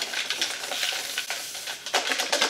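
Paper entry slips rustling and scraping as they are stirred and shaken around inside a plastic bucket, a continuous dry rustle.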